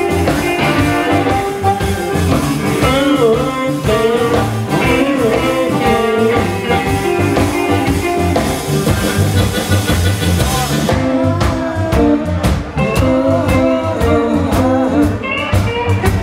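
Live electric blues band playing an instrumental passage: electric guitars, electric bass and drum kit, with a blues harmonica played into a cupped hand-held microphone carrying a bending lead line.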